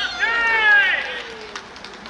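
A man's loud shout, one long call of about a second that falls in pitch, celebrating a goal just scored.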